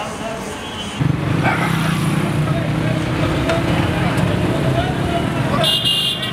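A motor vehicle engine starts up abruptly about a second in and runs steadily, with voices over it. Near the end it gives way to a brief high beep.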